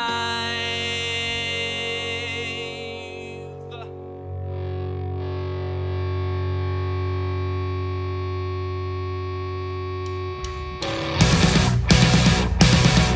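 Live rock band in an instrumental passage: a held, distorted guitar and keyboard chord rings on, and a deep bass note joins about four seconds in. Near the end the drums and full band crash in loudly.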